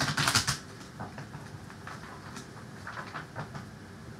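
A deck of cards being shuffled by hand: a quick flurry of card flicks in the first half-second, then light scattered card sounds.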